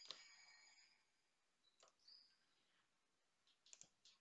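Near silence broken by a few faint computer keyboard and mouse clicks: one at the start, a couple about two seconds in, and a quick pair near the end.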